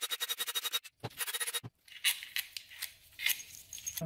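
A ratchet clicking rapidly in two short runs as the bolts holding a transmission valve body are undone, then a few scattered light metal clicks.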